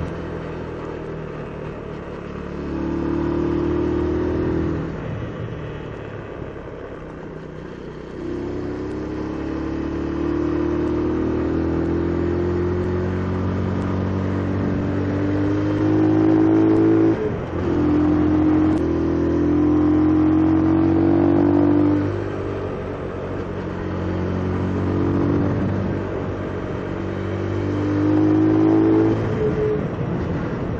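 Small Benelli motorcycle engine pulling uphill under throttle. Its note climbs gradually in pitch and falls back four times, about five, seventeen, twenty-two and twenty-nine seconds in, then climbs again.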